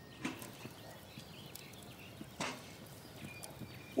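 Quiet outdoor ambience with a few faint high chirps and a single short knock about two and a half seconds in.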